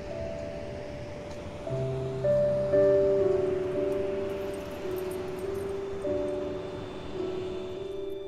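Background music: a slow, gentle melody of held notes, each struck and fading, over a faint steady noise.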